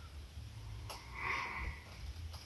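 A man sniffing once through his nose, a short breathy intake, with a faint click just before it.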